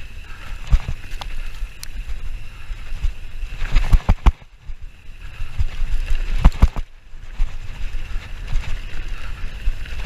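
Mountain bike ridden fast down a rough dirt trail: a continuous clatter of irregular knocks and rattles as the tyres, fork and frame take the bumps, dropping off briefly twice about halfway through.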